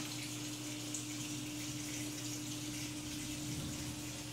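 Water running steadily through an aquaponics swirl-filter bucket, with a steady low hum underneath.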